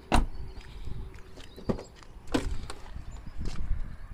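A car door of a 1989 Honda Legend sedan shutting with a thud just after the start, followed by a few lighter clicks and knocks of door handling.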